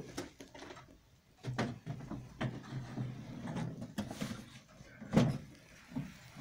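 Irregular wooden knocks and scrapes as the heavy hood of a longcase clock is handled and slid back onto its case, with the loudest knock about five seconds in.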